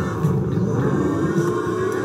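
A slot machine's electronic roulette-spin sound effect, the ball rolling around the spinning on-screen wheel: a steady rumble with tones sliding up and down.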